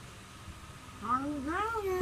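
Low room hum, then about a second in a person's drawn-out, wavering vocal sound that rises and falls in pitch.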